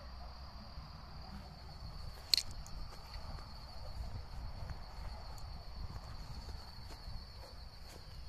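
Steady high-pitched chorus of night insects such as crickets, with a low rumble of wind and handling on the microphone. A single sharp click, the loudest sound, comes a little over two seconds in.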